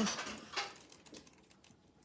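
Faint rustling and small clicks of nail transfer foil being handled and pressed onto a nail, mostly in the first second.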